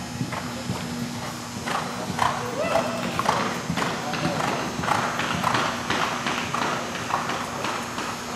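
Thoroughbred show jumper's hoofbeats cantering on soft indoor arena footing, a quick uneven run of strikes, with voices faintly behind.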